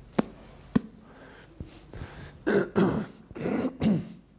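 A man clearing his throat and coughing several times in the second half, after two short sharp clicks.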